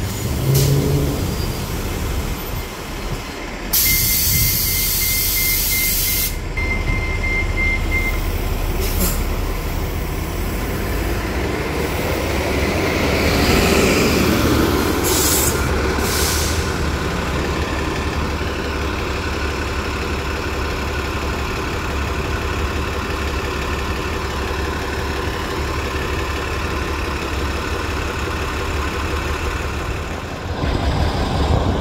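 Diesel transit buses idling at a stop with a steady low rumble; about four seconds in, a loud hiss of released air from a bus's air system lasts a couple of seconds, with a steady beeping over it. Shorter air hisses follow, and around the middle a bus's engine sound swells and fades as it pulls by.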